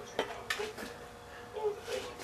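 A few faint, sharp clicks and light knocks, the clearest about half a second in, over a quiet background.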